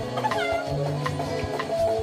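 Background music with a steady beat and held notes. About half a second in, a brief high sliding sound with a meow-like fall stands out.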